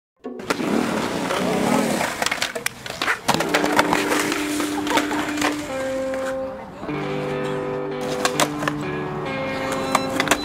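Skateboard wheels rolling on concrete, with sharp clacks of the board, mixed with music whose held notes come in after about three seconds.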